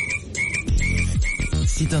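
Novelty electronic frog shop-entry chime croaking over and over, short chirps at one pitch, about two a second; each croak marks a customer coming through the door.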